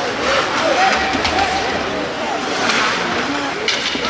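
Ice hockey play at rink level: skate blades scraping and carving on the ice in repeated hissing swells, with a few sharp stick-and-puck clicks near the end, under the voices of players and spectators.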